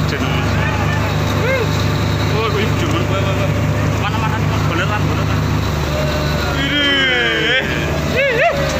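A boat engine runs steadily, and its low note changes about two-thirds of the way through. People's voices call out over it, with a loud drawn-out call near the end.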